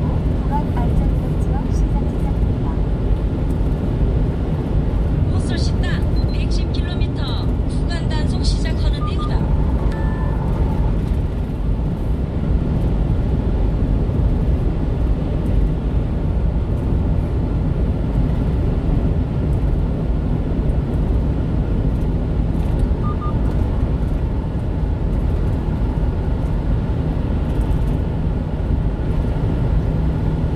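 Steady low road and engine rumble inside the cab of a 1-ton refrigerated box truck driving at highway speed.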